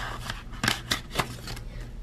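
Hands working a clear plastic zipper pouch and a paper cash envelope with bills: a few crisp plastic and paper rustles and snaps, the three sharpest coming close together about a second in.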